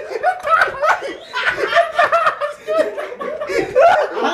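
A man laughing in quick repeated bursts as he is massaged.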